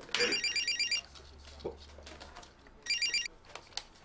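Telephone ringing with a high electronic trill: one ring about a second long at the start, then a shorter ring near three seconds in.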